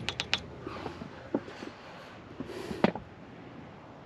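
Light handling clicks and knocks from a wooden pipe block and metal EMT conduit on a ladder mount: a quick cluster of clicks at the start, scattered faint ticks, and two sharper knocks later on.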